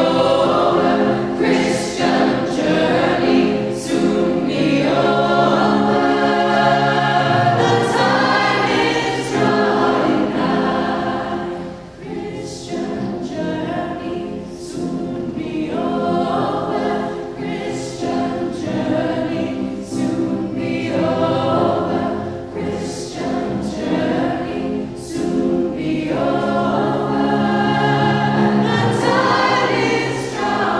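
A choir singing under a conductor, with sustained chords throughout. It drops quieter about twelve seconds in, then builds back up.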